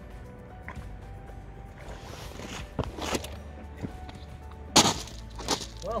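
Footsteps crunching on a pebble beach, a handful of sharp steps in the second half, the loudest just before the end, over faint background music.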